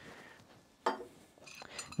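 A few light metallic clinks from a small stainless-steel dish handled over a glass beaker while salt is tipped out of it. The sharpest clink comes just before a second in, with smaller taps near the end.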